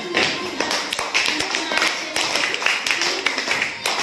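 Hand clapping from a group, uneven and overlapping, many sharp claps a second, with voices in the room.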